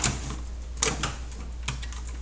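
Light clicks and rattles of a metal toolbox drawer being handled, with a couple of short clicks about a second in and near the end, over a steady low hum.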